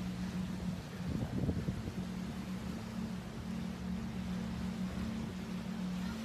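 Steady low hum of a cruise ship's engines and machinery over an even hiss of wind and sea.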